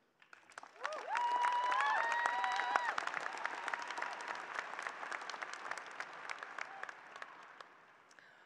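A large audience applauding. The clapping starts about a second in with a few cheers and whoops over the first two seconds, then dies away gradually.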